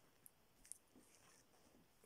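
Near silence, with a couple of faint clicks from a plastic clip-on ferrite clamp being handled on a mains cable.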